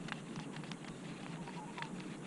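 Faint, irregular light clicks from a baitcasting reel being cranked on a lure retrieve, over a low steady background hiss.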